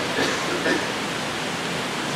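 Steady, even hiss of the recording's background noise during a pause in speech, with a faint brief voice sound in the first second.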